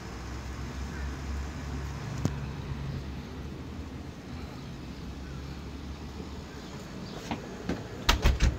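Low, steady rumble of road traffic, strongest in the first few seconds. A single sharp click comes a little past two seconds in, and two light knocks on a door come near the end.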